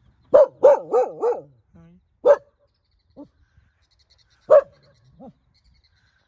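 A dog barking: a quick run of four barks about half a second in, then single barks every second or two, with a couple of weaker ones in between.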